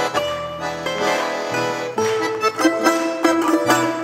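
Balalaika playing a lively melody with quick strummed notes, which come thicker in the second half, over a button-accordion accompaniment holding low notes.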